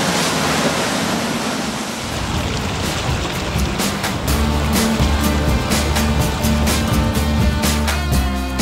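A rushing noise of wind and water from a motor boat under way. About two seconds in, background music comes in and takes over, with a steady beat and a heavy bass line.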